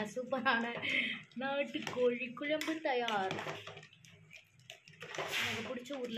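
A person talking, with a short burst of noise about five seconds in.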